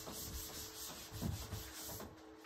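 Whiteboard eraser rubbing across a whiteboard, wiping off marker writing in repeated strokes.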